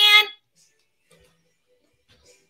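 A woman's voice finishes an excited exclamation right at the start, then near silence with only faint room sounds for the rest.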